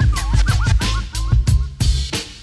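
Hip hop track: a drum beat over deep bass, with turntable scratching as short, quick pitch sweeps repeating over the beat.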